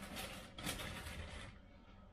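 Faint rustling and handling noise as a raw potato is picked up, dying away after about a second and a half.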